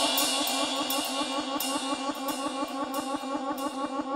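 Club dance music mixed by a DJ: a fast, driving pattern of drums, hi-hats and cymbals with a repeating melodic figure, the bass dropped out so the track sounds thin and lower in level.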